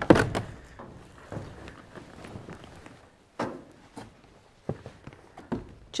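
A sharp thunk right at the start, then a few quieter, spaced footsteps and light knocks on the floor of a small corrugated-metal shed.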